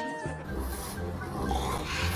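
A French bulldog making low, rough noises, after a toy's electronic tune cuts off just at the start.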